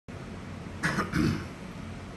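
A man clears his throat with two short coughs about a second in.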